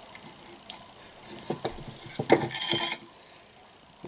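Metal lamp harp clicking and rattling against the lamp's socket and harp saddle as it is fitted back on: a few light clicks, then a louder metallic clatter with a high ring about two and a half seconds in.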